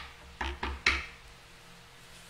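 Tarot cards being handled on a tabletop: four sharp taps in the first second, the last one the loudest.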